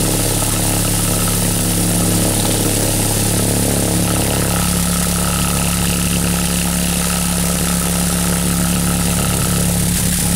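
A loudspeaker playing a steady, low-pitched hum with overtones at a slightly raised amplitude. It shakes a potato-starch non-Newtonian suspension lying on a plastic sheet over the cone. The tone shifts about four and a half seconds in.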